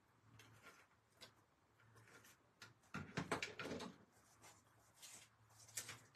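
Tape-runner adhesive dispenser run across card stock in short scratchy strokes, with light paper handling; the loudest strokes come about three seconds in.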